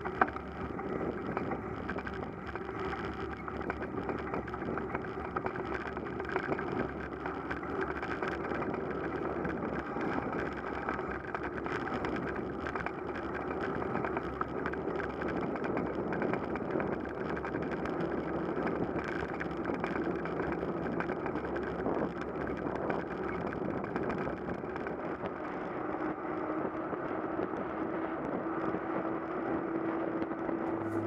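Steady rushing of wind and road noise picked up by a camera riding on a road bicycle in motion.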